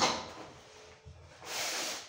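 A person moving on a foam exercise mat while turning over from lying on the back into a plank: a knock right at the start, then a short rustle of hands and body on the mat near the end.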